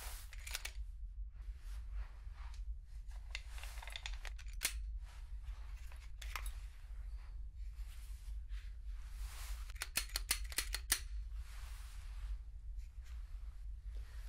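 Gloved hands handling an unloaded fifth-generation Glock 19 pistol: soft rubbing swishes between sharp metallic clicks of its parts. About ten seconds in comes a quick run of six or seven clicks.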